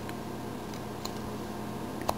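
Carving knife cutting into a small wooden figure, a couple of faint clicks over a steady low hum.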